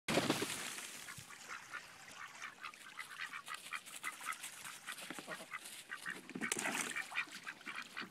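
Pet ducks quacking in a steady run of short, repeated calls, a few a second, getting louder near the end. At the very start a garden hose's water splashes into a plastic kiddie pool, fading within the first second or two.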